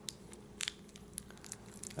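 A few faint, sharp clicks of small metal parts being handled: an AAA battery seated in an aluminium keychain flashlight and its head being threaded back onto the body.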